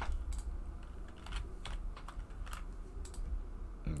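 Typing on a computer keyboard: a scatter of short, irregularly spaced key clicks.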